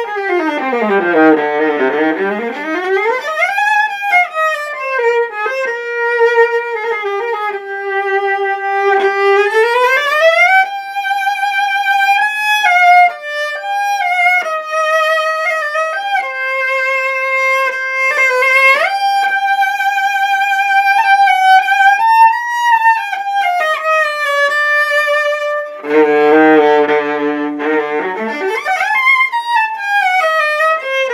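Unaccompanied solo viola, bowed. It opens with a fast run falling to its lowest notes, then plays long held notes with vibrato, and near the end a quick passage low on the instrument with notes sounding together.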